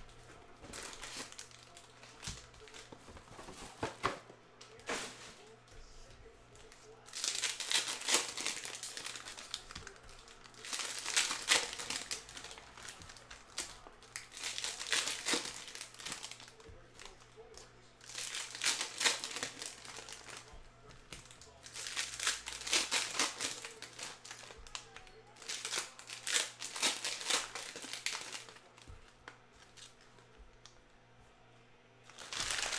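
Foil wrappers of Panini Prizm football card packs being torn open and crinkled by hand. The sound comes in six crackly bursts, one about every four seconds, with lighter rustling in between.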